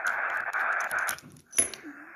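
Xiegu X6100 HF transceiver's speaker giving steady 80-metre band noise (receiver hiss in lower sideband), which drops out about a second in, followed by a sharp click and fainter hiss, as the antenna is swapped over.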